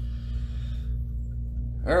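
Steady low hum of room or equipment noise; a man starts speaking near the end.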